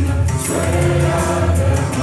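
Mixed choir singing a Malayalam Christian devotional song in the Mayamalavagowla raga, with several voices holding sustained notes together.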